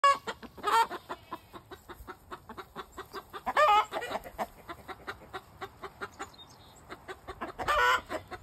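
A flock of chickens clucking, with many short clucks throughout and three louder, wavering squawks: about a second in, around the middle, and at the very end.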